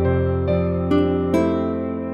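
Instrumental passage of a gospel song with no singing: pitched notes struck about twice a second over a held low bass note.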